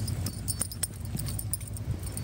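Light metallic jingling at an uneven rhythm from a trotting pug's leash clip and harness hardware, over a low steady rumble.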